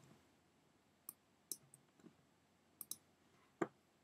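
Faint, scattered clicks of computer keys being pressed while code is edited: a handful spread over the few seconds, the loudest near the end, against near silence.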